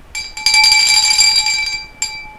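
A bright bell-like ring: several steady tones sounding together, starting about half a second in, holding for over a second and fading near the end.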